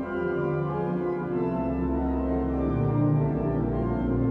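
Ruffatti pipe organ playing music of sustained, held chords, with a deep pedal bass note entering about a second and a half in.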